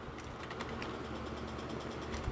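Faint computer-keyboard typing, a few scattered keystrokes, over a low steady hum.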